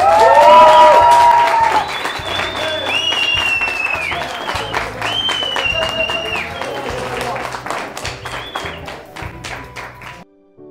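A small group clapping, with long high cheering calls over music; the clapping is thickest in the first couple of seconds and thins out toward the end.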